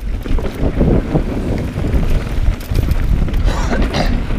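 Wind rushing over the microphone of an action camera on a mountain bike ridden fast down a dirt trail, with a steady low rumble from the tyres on dirt and scattered clicks and rattles from the bike.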